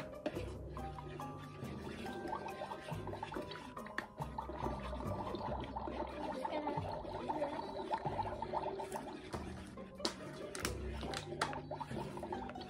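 Magic Mixies toy cauldron playing its electronic magic-brewing music with bubbling, sizzling cauldron effects as its potion is stirred, in the brewing stage before its tap-tap-tap cue.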